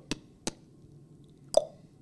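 Three short clicks over faint room noise, the loudest coming about one and a half seconds in with a brief hollow ring.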